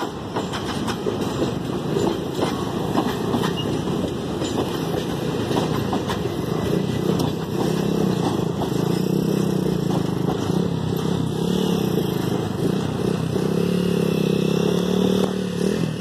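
Empty freight wagons rolling past on the rails, a steady rumble with scattered clicks of wheels over the track. About halfway through, a car engine's steady hum grows close and carries to the end.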